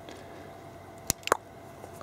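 Wire cutters clipping through a thin wire: two sharp clicks about a fifth of a second apart, the second with a short falling ring.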